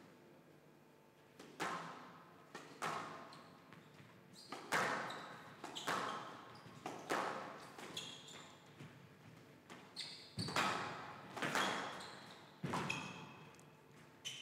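Squash rally: the ball is struck by rackets and smacks off the walls in a string of sharp cracks, beginning with the serve about a second and a half in and then coming roughly once a second, with short high squeaks of court shoes on the wooden floor between the shots.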